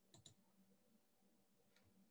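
Near silence with room tone, broken by two faint clicks close together near the start and a third faint click near the end.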